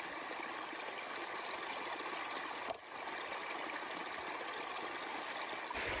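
Shallow stream water running and trickling over rocks, a steady babble that dips briefly about three seconds in.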